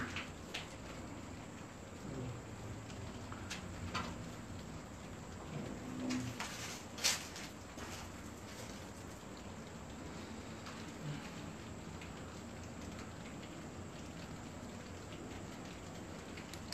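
Steady rain falling, with a few sharp drip or drop ticks scattered through it; the loudest tick comes about seven seconds in.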